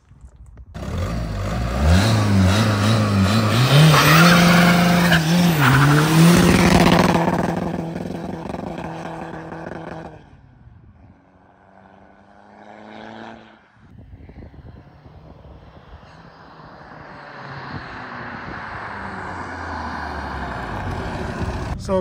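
Tuned VW Caddy's 1.9 TDI PD150 diesel accelerating hard away from a standstill about a second in, its pitch climbing in steps with brief dips, then fading into the distance. Later a quieter, steady rushing noise builds.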